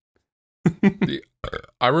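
A man's short laugh, a few quick voiced bursts, then a man starts speaking with a drawn-out "I" near the end.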